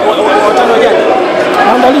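A man speaking, with other people's voices chattering around him.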